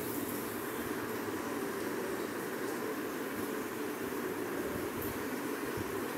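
Sliced onions and tomato frying in a pan, a steady sizzle while they are sautéed.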